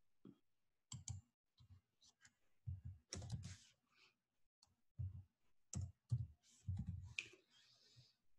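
Faint, irregular clicking of a computer keyboard: short clusters of keystrokes with gaps between them.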